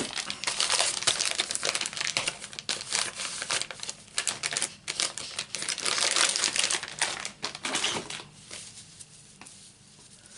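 Wet-wipe packet crinkling and rustling as wipes are pulled out and handled, a dense run of rapid crackles that thins out and fades after about eight seconds.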